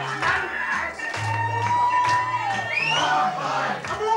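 Live band music over a repeating bass line. A singer holds one long shouted note that falls away just past the middle, then gives a short rising whoop. Crowd noise runs under it.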